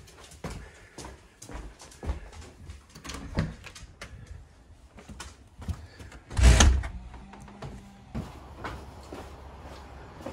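Footsteps and small knocks while walking, with a door opened and shut about six and a half seconds in, the loudest sound, landing with a low thud.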